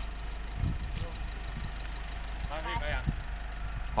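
Vehicle engine idling steadily, a low hum, with a brief faint voice about two and a half seconds in.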